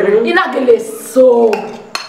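Women's voices talking, with cutlery clinking on a china plate; a sharp clink comes near the end.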